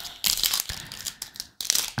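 Foil wrapper of a Topps Chrome trading-card pack being torn open and crinkled by hand: a run of sharp crackles, with a short lull about one and a half seconds in.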